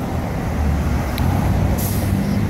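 City street traffic: cars and trucks passing with a steady low rumble, and a short high hiss near the end.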